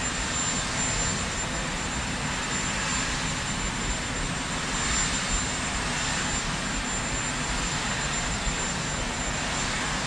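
Turbine engines of the Marine One helicopter running steadily, a continuous rushing drone with a thin, steady high whine over it.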